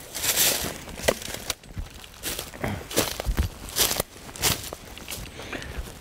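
Footsteps crunching and rustling through dry leaf litter on a forest trail, a step roughly every three-quarters of a second.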